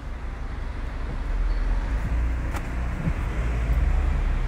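Convertible car driving with its roof down: steady road and wind noise with a low rumble, growing a little louder after about a second, and one faint click a little past halfway.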